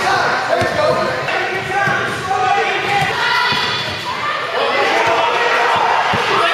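A basketball bouncing and thudding on a gym's wooden court floor, with a crowd of spectators' and players' voices chattering and calling out throughout.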